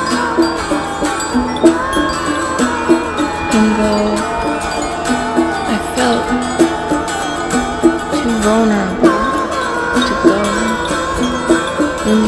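Instrumental music: a melody of short pitched notes over a steady beat.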